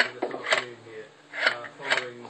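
Indistinct speech from a television news broadcast playing in the room.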